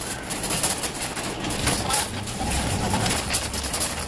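Metal shopping cart rattling and clattering as it is pushed along, with a low rumble underneath that grows in the second half.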